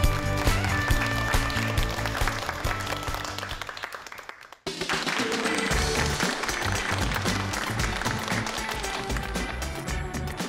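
Studio audience applauding over an upbeat music bed. The sound fades out about four and a half seconds in, then the music starts again and carries on steadily.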